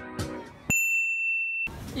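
Acoustic guitar music stops abruptly, followed by a single high electronic ding tone, held about a second and fading slightly, which cuts off suddenly into outdoor background noise.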